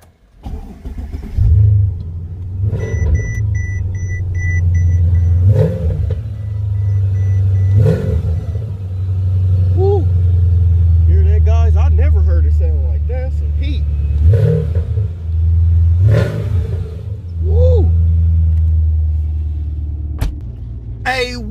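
Mercedes-Benz CL550's V8 starting about a second and a half in, then running with a deep steady rumble and several short revs. A quick series of electronic beeps sounds a couple of seconds after the start.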